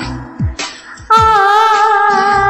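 Hindi patriotic song with a backing track. A held note falls away at the start, drum strokes carry a brief lull, and about a second in a new long held note comes in loudly with a slight waver.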